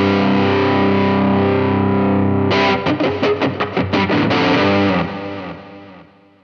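Electric guitar, a black Fender Stratocaster-style partscaster, played loud: a held chord, then a quick run of about ten choppy strummed chords a little before halfway, ending on a chord that rings and fades out.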